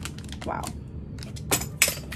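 A small sewing-machine part dropped, hitting a hard surface with two sharp clacks about a second and a half in, after lighter clicking from handling its packet.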